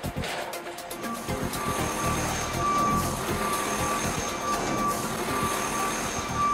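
Recycling truck's engine running with its reversing alarm beeping from about a second in, under background music.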